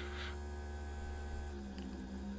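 Steady electrical mains hum with faint steady higher tones above it, and two brief soft noises right at the start.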